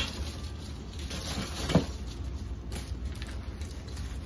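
Artificial floral picks rustling as they are handled and swapped, with a single sharp knock a little under two seconds in, over a steady low hum.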